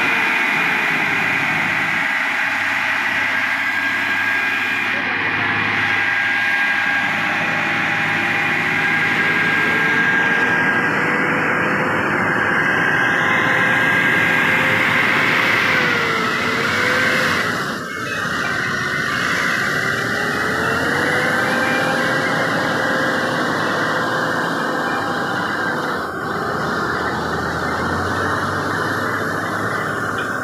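Heavy-haul tractor unit's diesel engine running steadily as the long multi-axle trailer rig rolls slowly past, with road and tyre noise. The engine's pitch dips and recovers briefly about halfway through, then dips slightly again near the end.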